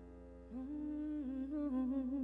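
A woman's voice humming a wordless, wavering melody, coming in about half a second in over the fading tail of a held electric keyboard chord.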